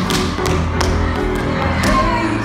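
Tap shoes striking the stage floor in several sharp taps over a recorded pop song playing in the hall.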